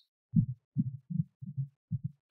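About five soft, low thumps, evenly spaced at a little over two a second.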